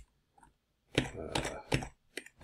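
Computer keyboard typing: about a second of near silence, then a quick run of keystrokes.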